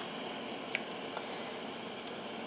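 Faint steady hiss from a gas stove burner heating a cast iron skillet of broth on medium-high, not yet boiling, with a couple of faint light ticks.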